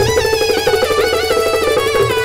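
Instrumental passage of a live Rajasthani bhajan band of keyboard, harmonium and dholak, with no singing. A melody of sliding, bending notes runs over a steady held note, with quick drumbeats underneath.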